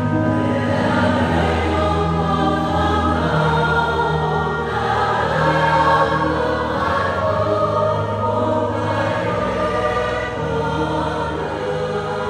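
Mixed choir of men's and women's voices singing a Vietnamese Catholic funeral hymn in sustained, held phrases.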